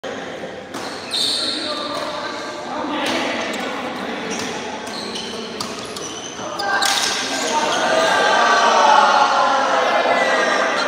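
Badminton rackets striking a shuttlecock in an echoing indoor hall, sharp smacks at irregular intervals of about one to two seconds during a rally. From about seven seconds in, several voices shout and get louder toward the end.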